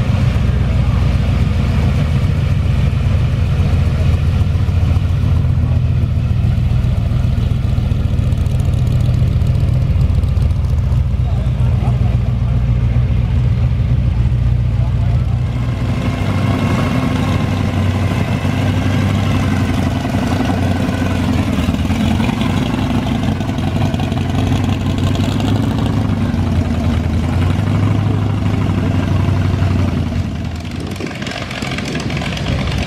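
Old hot rod and custom car engines running low and steady as the cars roll slowly past, the engine note changing about halfway through.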